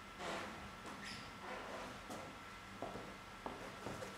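Clothing rustling and shuffling as a person gets up from sitting on the floor, in several short swishes. Then three light knocks or footsteps near the end.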